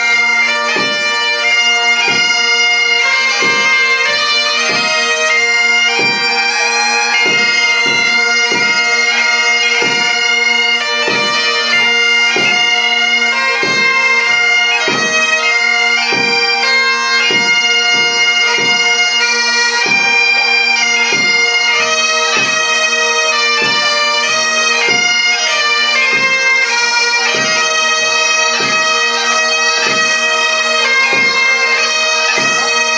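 Great Highland bagpipes playing a march, with steady drones under the chanter melody, and a marching drum beat of about two strokes a second.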